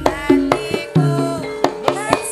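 Javanese gamelan music in koplo style: sharp kendang drum strokes over ringing metallophone notes, with a woman's voice singing long notes that glide between pitches.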